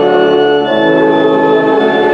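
Organ playing a hymn tune in slow, held chords, the chord changing about two-thirds of a second in and again near the end.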